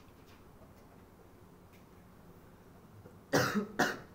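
A person coughing twice in quick succession about three seconds in, the second cough shorter. A few faint clicks are heard before the coughs.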